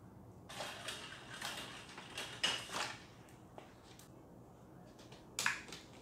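Hands working on a removed car seat: rustling and scraping against its cover and frame for a couple of seconds, then a few scattered clicks, with a sharper knock near the end.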